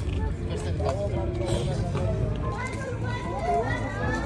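Voices of people at the scene speaking and calling out, over a steady low outdoor rumble.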